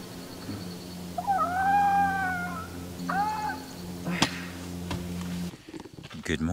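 Two drawn-out wailing calls, a long one that rises and falls and then a shorter one, over a steady low hum that cuts off near the end. A single sharp click comes about four seconds in.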